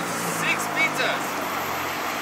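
Street traffic noise with a passing car's low engine hum that fades out about a second and a half in. Through it come brief snatches of a man's voice from a few metres away.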